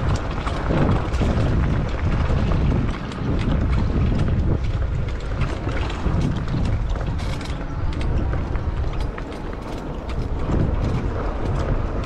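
Cyrusher XF900 electric mountain bike riding over a bumpy dirt trail: a steady low rumble from the tyres with frequent clicks and rattles from the bike, picked up by a camera mounted on the handlebars.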